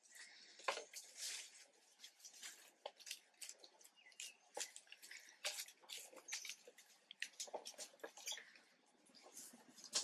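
Faint scattered crackles with small drips and splashes: baby long-tailed macaques shifting about on dry leaf litter and dabbling in a metal basin of water.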